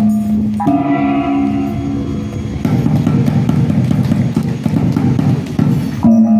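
Traditional Alor gong and drum ensemble playing. Gong tones ring and sustain, a fresh gong stroke comes in just under a second in, and from about halfway the drumming thickens into rapid, dense beats.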